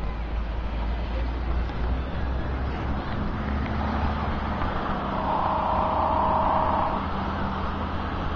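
Steady low rumble of engines and traffic, swelling into a louder hum for about two seconds past the middle.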